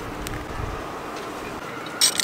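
Steady outdoor background noise, with a faint click about a quarter-second in and a brief low rumble soon after.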